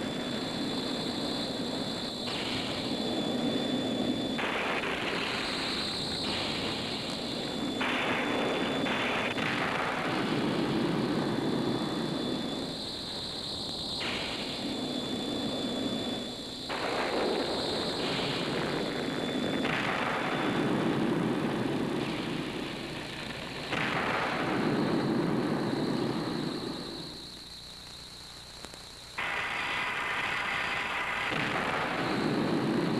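Jet-like rushing sci-fi sound effects of craft moving through space, in overlapping stretches that cut in and out abruptly, with a faint high whine over them and a quieter stretch near the end.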